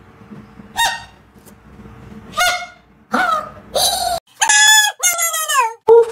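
Small plastic toy horn blown in short, goose-like honks, four of them spaced out over the first four seconds. A longer, higher honking sound with a falling pitch follows near the end.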